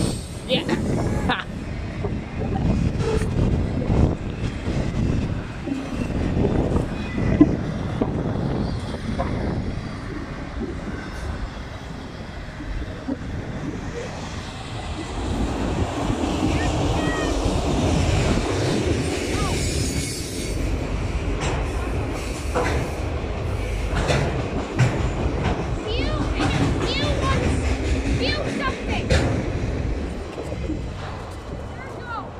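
Freight train of autorack cars rolling past at close range: a continuous rumble of steel wheels on rail, with rattling from the cars and scattered clanks and clicks.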